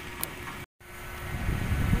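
Outdoor background noise with a faint steady hum, broken by a moment of dead silence at an edit cut just before the middle. After it a low rumble grows louder through the second half.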